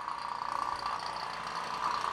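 Electric vacuum pump running steadily while pulling vacuum on a vacuum chuck, a steady hum with a faint high whine.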